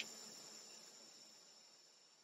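Near silence: only a faint steady high-pitched hiss.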